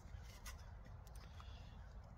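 Near quiet: a low rumble of wind on the microphone, with a faint click or two as two folding knives are shifted in the hands.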